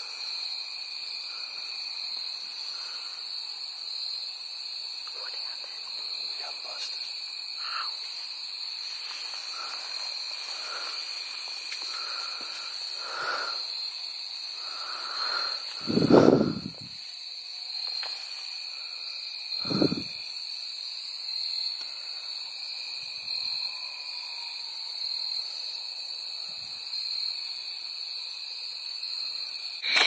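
Evening woodland insect chorus: a steady high-pitched drone with scattered short chirps. Two dull bumps about halfway through, the first the louder, from handling inside the ground blind.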